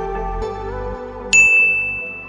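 Soft background music, then a little over a second in a single bright notification 'ding' chime sounds as the subscribe-bell icon is clicked, ringing on one pitch and fading away.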